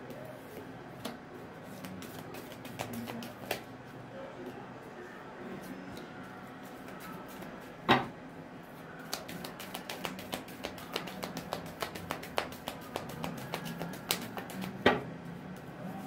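Soft background music with a steady low tone, over a tarot deck being handled and shuffled: a sharp tap about halfway through, a run of quick small clicks from the cards in the last third, and another sharp tap near the end.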